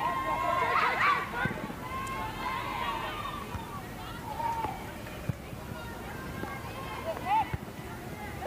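High-pitched women's voices shouting and calling out across a soccer pitch, loudest in the first second, with a few more calls later, over open-field ambience.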